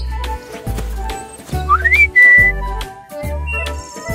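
Bouncy children's background music with a bass note pulsing about once a second. About halfway through, a whistle glides quickly upward and then holds a short high note, a comic cartoon sound effect.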